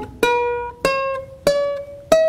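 Ukulele played one note at a time: three single plucked notes about two-thirds of a second apart, each ringing and fading, and each a step higher than the last as the string is held down further along the neck to shorten it.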